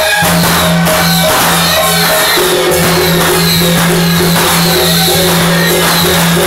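Loud, continuous music with drums and percussion strokes over a steady low drone, the kind played in a Taiwanese temple procession.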